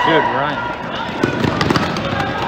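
A loud shout, then a quick run of footfalls and thuds from dodgeball players sprinting across a gym floor in the opening rush of a point.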